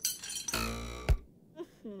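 Cartoon sound effects of a character dropping down from a chain-hung chandelier: a metallic clinking rattle, then a single thud of the landing a little over a second in. Near the end a short child's 'mmh' begins.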